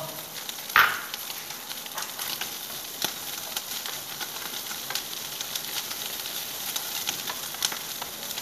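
Shrimp stir-frying in a nonstick frying pan over a gas flame: steady sizzling with small crackles as the shells pop, and the taps and scrapes of a spatula stirring. A sharp knock about a second in, as a small bowl is set down on the counter.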